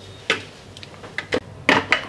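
A few separate light knocks and clinks of metal kitchen utensils as a pan and the steel jar of a mixer grinder are handled.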